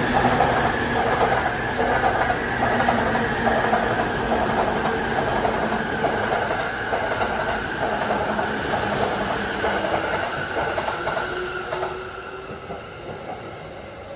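JR E231-0 series electric commuter train pulling out of a station as it accelerates away, its traction motors whining over the noise of the wheels on the rails. The sound fades clearly about twelve seconds in as the train draws off.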